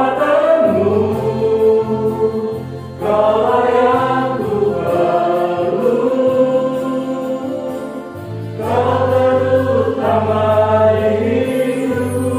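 A small vocal group singing a worship song in harmony over electronic keyboard accompaniment. Long sustained phrases are sung, with a new phrase coming in about three seconds in and again past the two-thirds mark.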